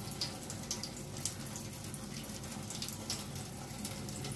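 Tyent 7070 water ionizer pouring a steady stream of water from its flexible spout into a sink, splashing evenly, with a low steady hum underneath.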